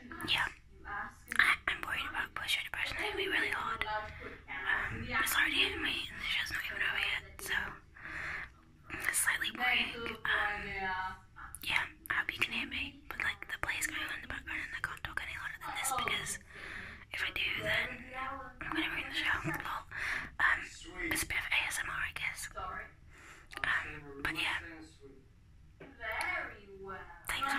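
A woman whispering close to the microphone, in a continuous run of hushed talk.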